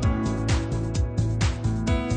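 Background music with a steady beat, about two strong beats a second.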